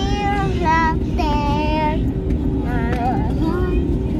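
A young girl singing short phrases and a few wavering held notes, over the steady low drone of an airliner cabin in flight.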